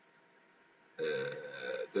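A man's drawn-out hesitation "uhh", held steady for almost a second, after about a second of near silence.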